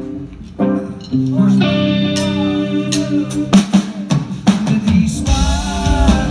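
Live rock band starting a song: sustained electric guitar chords ring out with scattered drum and cymbal hits, then the drums and bass come in fully about five seconds in.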